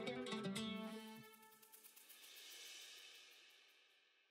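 Background music fading out: pitched notes with light cymbal ticks die away over the first second or so. A faint high ringing follows and ends a little over three seconds in.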